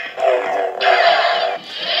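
Tinny electronic music and sound effects from the built-in speaker of an Anakin Skywalker / Darth Vader talking action figure, set off by its press button. The sound holds one steady pitch for over a second, then cuts off.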